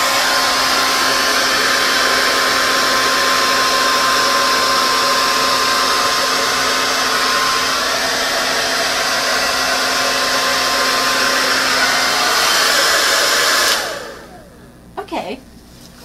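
Hot Shot hair dryer running on high through a slotted nozzle attachment, a loud steady rush of air with a faint steady tone in it, switching off about 14 seconds in.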